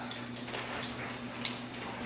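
A few light clicks and taps of metal kitchen utensils being handled, over a faint steady hum.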